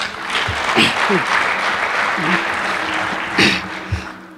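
Audience applauding, with a few voices over the clapping. The applause dies down near the end.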